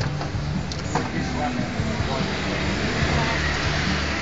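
Indistinct background voices over steady street noise.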